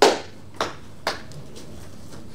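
Three short taps over quiet room tone: one at the very start, the loudest, then two fainter ones about half a second apart.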